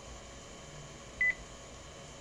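A single short, high-pitched electronic beep a little over a second in, over a steady faint hiss of background noise.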